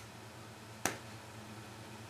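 A single sharp click a little under a second in, a key struck on a laptop keyboard, over faint room tone.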